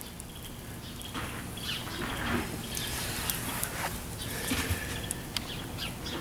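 Quiet outdoor background: a steady low hiss with scattered small clicks and a few faint bird chirps.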